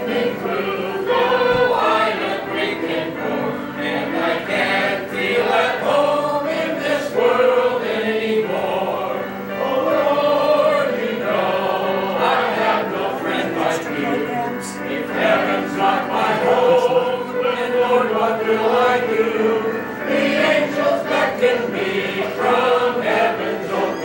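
Many voices singing a hymn together with musical accompaniment, in long held notes.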